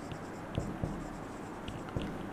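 Marker pen writing on a whiteboard: faint, short, irregular strokes and taps of the tip as letters are written.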